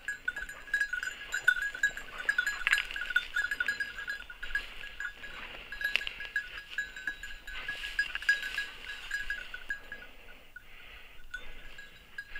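Small bell on a hunting dog's collar jingling irregularly as the dog searches through the undergrowth, with a few sharp snaps among it.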